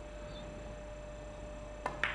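A faint steady hum of a quiet arena, then near the end one sharp click as the cue tip strikes the cue ball.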